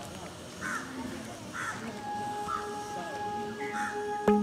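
Crows cawing: four short caws about a second apart. Soft background music with steady held notes comes in about halfway.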